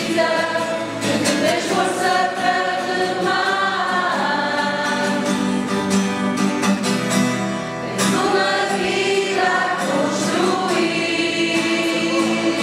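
A group of young people singing a hymn together, with held notes and phrases that change every few seconds.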